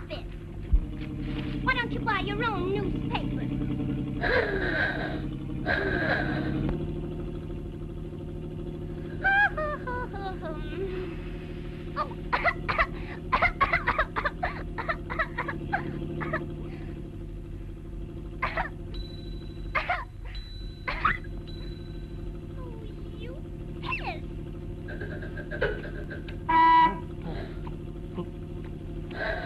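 Early sound-era cartoon soundtrack: wordless vocal squeaks, grunts and glides and quick sound effects, over a steady low hum. A held high tone comes in the middle, and a short loud burst comes near the end.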